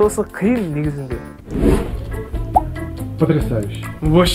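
A man speaking, with background music playing underneath.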